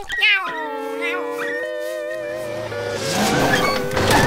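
Cartoon pet snail's voice: a short cry, then one long howl that falls slowly in pitch. Near the end a rising rush of noise comes in as a bus pulls up.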